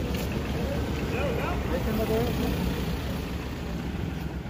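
Street traffic: a steady low rumble of vehicle engines, with indistinct voices over it.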